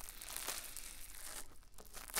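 Wet mascara spoolie brushing in and around the silicone ear of a binaural microphone: close, crackly scratching in a run of short strokes.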